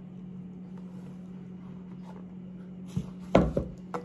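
A faint steady low hum, then about three seconds in a couple of dull, heavy thumps as the risen dough drops out of the upturned bowl into the metal baking tray.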